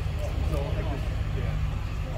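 Steady low-pitched rumble with faint voices in the distance.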